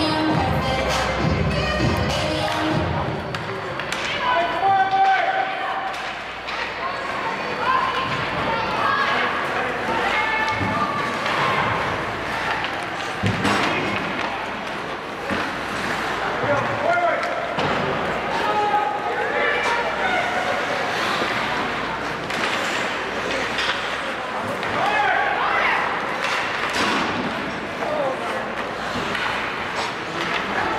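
Ice hockey rink sounds during play: spectators' voices calling out and shouting, with thuds and knocks of puck, sticks and players against the boards.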